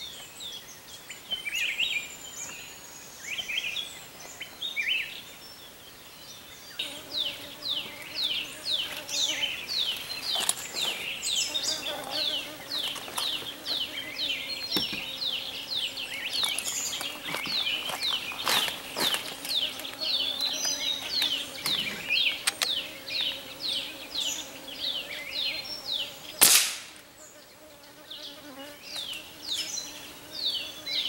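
Birds calling in the treetops, a quick run of high chirps that each slide downward, several a second. Near the end, a single loud gunshot rings out and dies away.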